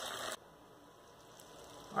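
Chicken cooking in sauce in a pot, a faint sizzle that cuts off abruptly about a third of a second in, leaving near silence.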